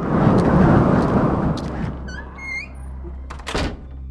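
Sound effect of a heavy door: a loud rumbling scrape for about two seconds, a few short squeaks about two seconds in, then a sharp thud near the end as it shuts.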